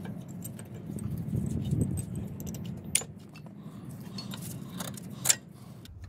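Power Stop brake pads with steel backing plates clicking and clinking against the metal caliper bracket as they are snapped into place on a front disc brake. The sharpest clicks come about three seconds in and again a little after five seconds.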